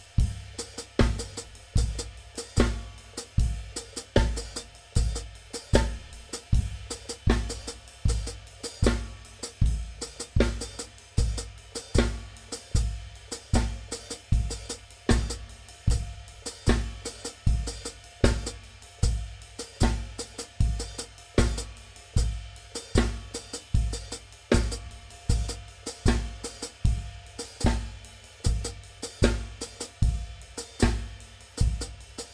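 Gretsch drum kit with Zildjian cymbals played in a steady, even groove: bass drum, snare and ride cymbal, with the left foot working the hi-hat pedal to play a written melody over the groove.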